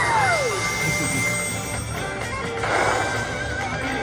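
Smokin' Hot Stuff Wicked Wheel slot machine playing its bonus-wheel sound effects and music: a falling whistle-like glide at the start, a held tone for about a second and a half, then a shimmering sparkle about three seconds in.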